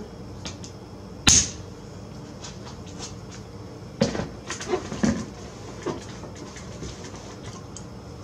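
Plastic cap going onto a filled 56-ounce plastic juice jug with one sharp click, then a few knocks as the jug is handled and set down on the counter.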